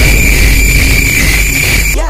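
Loud, distorted meme sound effect: a harsh, dense blast of noise with a steady high-pitched whine and heavy bass. It starts abruptly and cuts off at the end.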